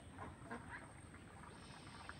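Faint, short animal calls, several in a row a few tenths of a second apart.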